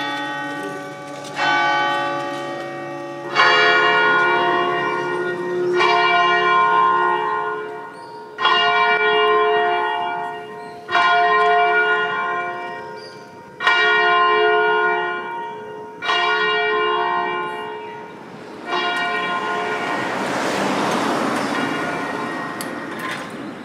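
A single church bell tolling slowly, struck about every two and a half seconds, each stroke ringing on and fading before the next. Near the end, a rushing noise rises under the last strokes.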